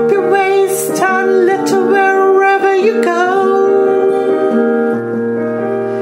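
Song demo track: a voice singing the melody in long held notes over keyboard accompaniment.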